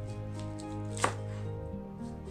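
A kitchen knife cutting an onion on a wooden cutting board, with one sharp knock of the blade on the board about a second in and a few lighter taps, over soft background music with held notes.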